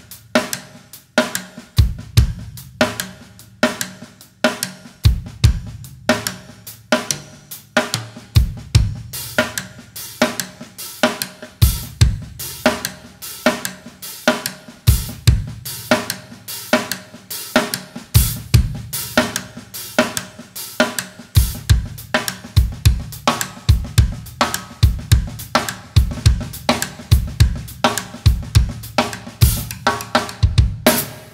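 Yamaha drum kit playing a dense, steady groove in imitation of the dholak. Rim clicks on the toms land on the downbeats, standing in for the player's pinky ring striking the wooden barrel, with hi-hat on the off-beats and snare on the 'uhs'. Bass-drum strokes fall in a varying pattern underneath.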